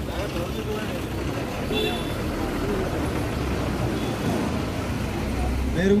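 Street traffic noise: a steady low rumble of passing road vehicles with indistinct voices in the background, growing a little louder near the end.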